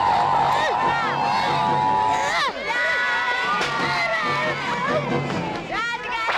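A group of children shouting and cheering, many high voices overlapping and rising and falling in pitch.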